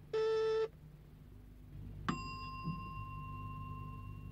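A lift call-button buzzer sounds for about half a second. About two seconds later a single bell ding rings out and fades slowly, the lift arriving, over a low hum.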